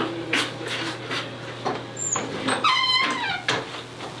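A dog gives one short whine that falls in pitch, about three seconds in, among a few soft knocks over a steady low hum.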